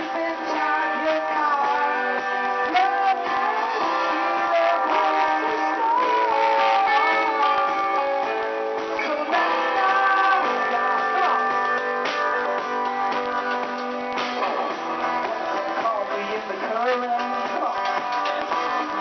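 A small acoustic band playing a song live, with strummed and picked acoustic guitars over a steady, unbroken accompaniment.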